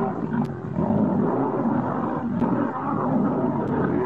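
Lions growling and snarling in overlapping, near-continuous bursts as a male lion fights with lionesses, dipping briefly just before a second in.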